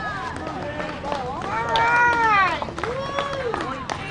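Spectators' voices cheering a runner in: a loud, high, drawn-out shout that rises then falls in the middle, followed by a lower call, with scattered sharp clicks.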